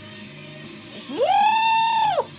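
Rock music with guitar playing quietly in the background. About a second in, a loud, high-pitched wordless vocal cry slides up, holds for about a second and then drops away.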